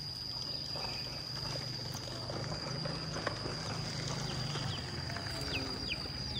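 Rural outdoor ambience: a steady high-pitched insect drone runs throughout over a low rumble, with scattered faint bird chirps and a few short falling calls near the end.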